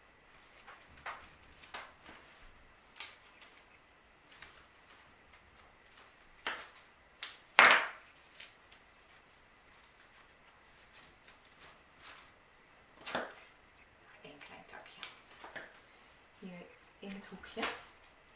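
Scattered short clicks and rustles of leafy sprigs being handled, trimmed and pushed into floral foam, the loudest about halfway through.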